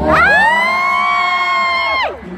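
A person's high-pitched scream, gliding up at the start and then held on one pitch for nearly two seconds before falling away, over crowd noise.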